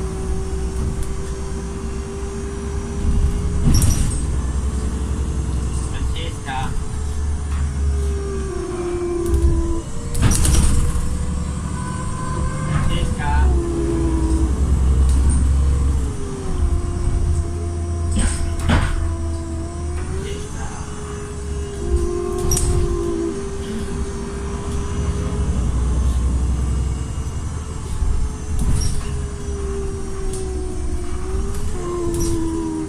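City bus heard from inside while under way: a low rumble of the engine and drivetrain with a whine that rises and falls several times as the bus speeds up and slows, and scattered knocks and rattles from the body.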